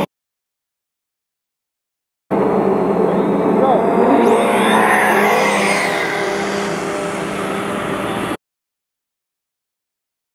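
Dead silence, then about two seconds in a Traxxas Slash 4x4 brushless RC truck's motor whine and tyre noise as it speeds past, with a drone's propeller buzz under it, cut off abruptly to silence again about two seconds before the end.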